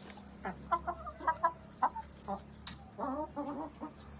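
Hens clucking: a scatter of short clucks, then a quicker run of longer, pitched calls about three seconds in.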